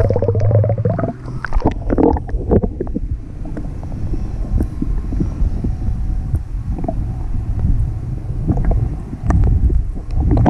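Muffled underwater noise picked up by a submerged action camera: a low rumble with scattered small ticks. It is busier with water sloshing and handling in the first three seconds, then settles to a steady low rumble.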